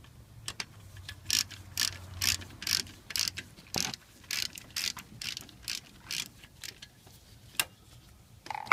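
Ratcheting wrench clicking in repeated short strokes, about two a second, as it turns a bolt on a car alternator.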